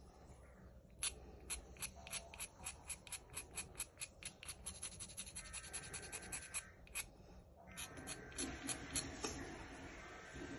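A black drawing pencil being sharpened by hand with a small blade, in quick, regular scraping strokes of about three or four a second that pause briefly about seven seconds in.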